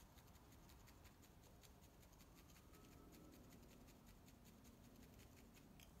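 Faint, rapid ticking of a felting needle stabbing repeatedly into a yarn pom-pom, several pokes a second, barely above room tone.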